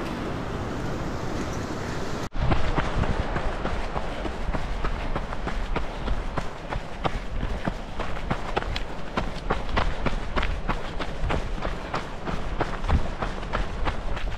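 Running footsteps on a dirt trail, a quick, even rhythm of about three footfalls a second, over a steady low rumble. The first two seconds hold only a steady rushing noise, which breaks off suddenly before the footfalls start.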